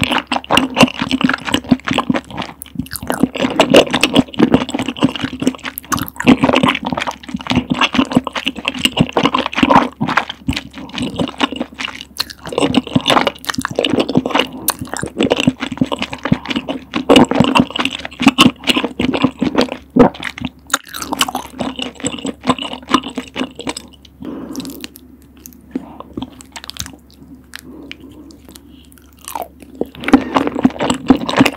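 Close-miked eating sounds of rosé tteokbokki: wet chewing of chewy rice cakes and glass noodles in a thick, creamy sauce, with sticky squelches and lip sounds. They go softer for a few seconds near the end, then pick up again with a new bite.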